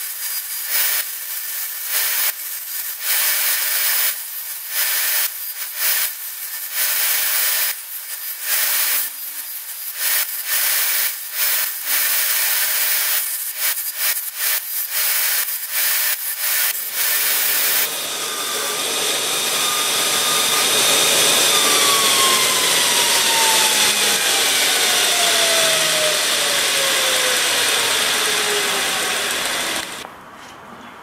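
Bench belt sander grinding a small hand-held metal part, in short strokes as the piece is pressed to the belt and lifted off again. For the last dozen seconds the sound turns steady, with a tone that falls slowly in pitch.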